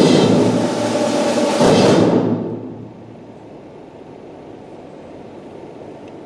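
Brass band with percussion playing a loud passage that stops on a final accented hit about two seconds in. The chord then dies away in the hall's reverberation, and a quiet pause follows.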